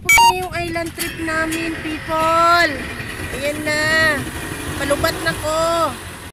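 A woman speaking over the low, steady running of a motorboat's engine.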